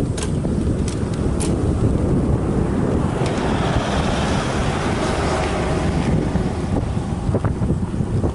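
Wind buffeting the microphone of a bicycle-mounted action camera on a slow climb: a steady low rumble, with a broader hiss swelling up in the middle for a few seconds.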